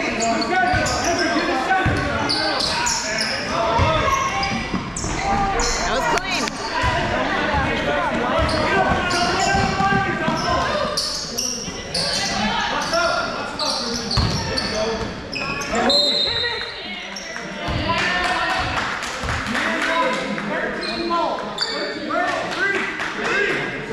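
Basketball game sounds in a gym: a ball bouncing on the court with repeated knocks, under a steady mix of players' and spectators' voices echoing in the large hall.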